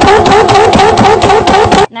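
Modified Nissan GT-R engine revving hard, with a rapid, irregular string of loud exhaust pops and bangs that sound like gunshots. The sound cuts off suddenly near the end.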